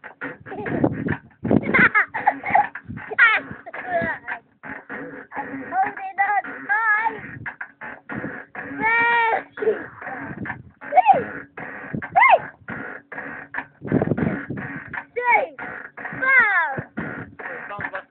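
Young children's voices: high, sliding squeals and whimpers mixed with chatter, with a few low rumbling thumps.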